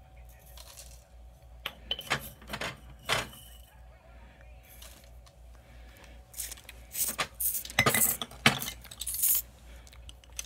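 A tablespoon clinking and scraping against a glass jar as dried elderberries are scooped out, with the rattle of glass jars being handled. The clinks are scattered at first and come thick and loud about seven to nine seconds in.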